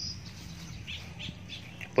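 Faint bird calls, a few short high notes scattered through the moment, over quiet outdoor background noise.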